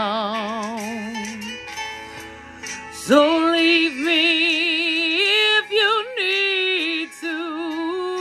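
A woman singing long held notes with a wide vibrato, over a guitar accompaniment. The voice stops for about a second and a half, then comes back in with a swoop up to a higher held note.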